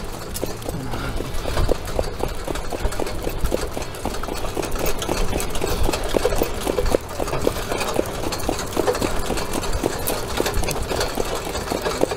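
Hoofbeats of a harness horse moving on a dirt track, a quick, uneven run of knocks, with the sulky it pulls rattling along behind.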